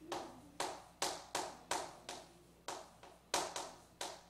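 Chalk tapping on a chalkboard while writing, a sharp tap at each stroke, about ten in four seconds, each fading away quickly.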